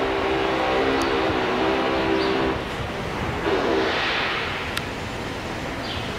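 A steady pitched engine drone lasts about two and a half seconds and fades. A shorter drone and a hiss follow a little later.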